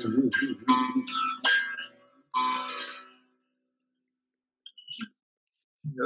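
A bağlama being strummed through the closing chords of a Turkish folk song. The last chord rings and dies away about three seconds in.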